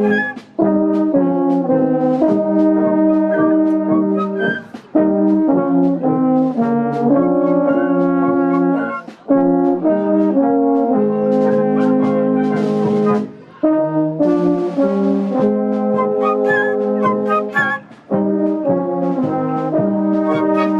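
Bavarian village wind band playing a folk brass piece outdoors: tubas and baritone horns carrying the bass, with trumpets, clarinets and flutes above. The music moves in phrases with short breaks between them every four to five seconds.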